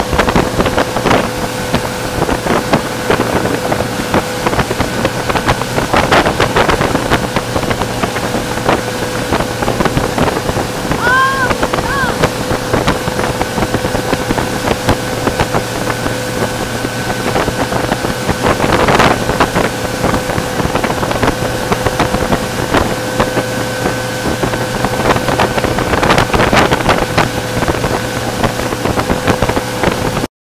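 Motorboat engine running steadily at towing speed, under the rush of the churning wake and wind buffeting the microphone, which swells louder several times. Two short high rising-and-falling sounds come a little over a third of the way in.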